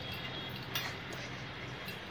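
Steady low background hum with a faint hiss, broken by two faint clicks, one near the middle and one near the end.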